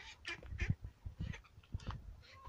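Young ducks giving several short, separate quacking calls while they walk, with a few low thumps mixed in.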